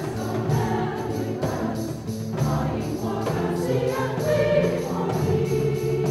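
A large mixed choir singing with an orchestra, holding sustained chords that swell and change without a break.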